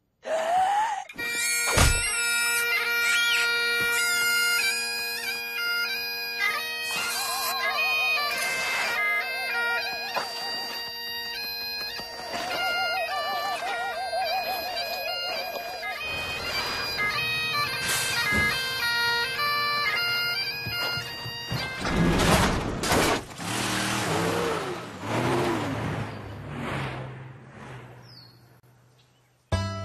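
Bagpipe music: steady drones under a stepping chanter melody, with a wavering, warbling tone twice in the middle. About 22 seconds in, the piping gives way to a noisier stretch of thuds and sliding tones that fades away at the end.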